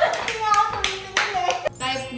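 A few sharp hand claps among excited women's voices and laughter, over background music.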